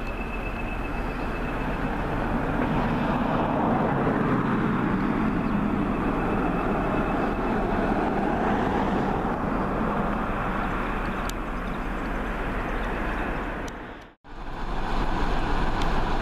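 Class 20 diesel locomotive's engine running under power as it works past along the line, growing louder over the first few seconds and then holding steady. About fourteen seconds in the sound cuts out abruptly and a second diesel, a Class 45 'Peak' locomotive standing with its train, is heard running.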